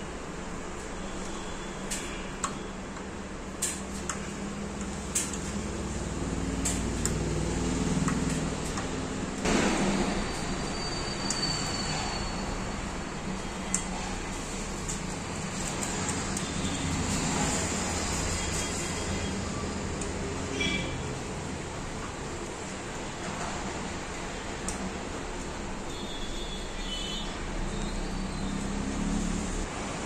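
Scattered light clicks and taps of screws and washers being fitted into a metal monitor-arm mounting plate with a hand screwdriver, over a steady background noise. A low rumble swells for a few seconds about a third of the way in.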